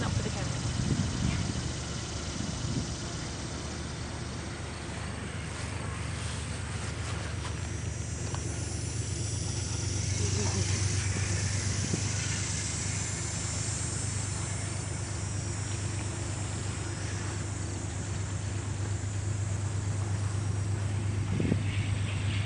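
Steady low hum over even outdoor background noise, with no clear single event.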